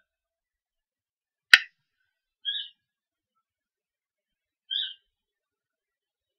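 A single sharp click, then two brief high chirps a little over two seconds apart, with dead silence between them.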